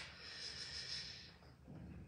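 A man's faint breath out, a soft hiss that fades away about a second and a half in, then quiet room tone.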